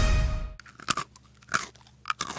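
Music ends about half a second in. Then comes a person biting and chewing meat on the bone, with a few short crunches, two of them louder.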